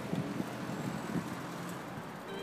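Outdoor background noise: wind buffeting the camera microphone over a steady hum of distant traffic, with a few low gusts in the first second or so.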